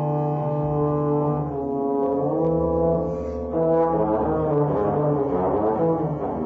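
Trombone playing long held notes that step from pitch to pitch, with other sustained tones overlapping it; the sound thickens into a denser cluster of notes from about four seconds in.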